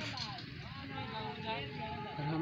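Faint, distant men's voices calling across an open field over a low, steady outdoor background noise.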